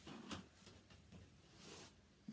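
Near silence in a small room, with a soft bump just after the start and a brief rustle near the end.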